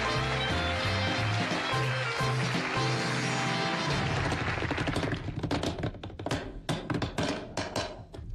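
Studio band music with a walking bass line, fading out about four seconds in, followed by a run of irregular sharp hand claps.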